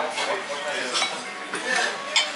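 Cutlery and ceramic dishes clinking, a few sharp clinks spread across two seconds.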